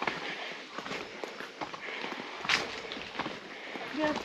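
Footsteps going down concrete steps, a run of irregular taps and scuffs with one louder step about two and a half seconds in.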